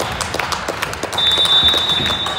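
Gymnasium sounds during a volleyball match: scattered sharp claps and knocks throughout, and a long, steady high-pitched tone starting a little past halfway.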